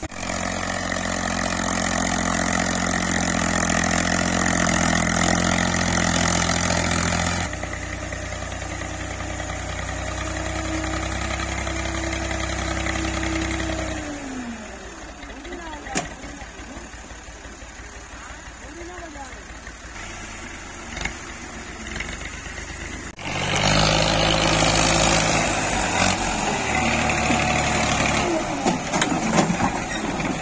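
Massey Ferguson tractor's diesel engine working hard. It is loud for about the first seven seconds, runs lower for several more, then falls away about halfway through. It comes back loud about three quarters of the way in, with uneven surges near the end.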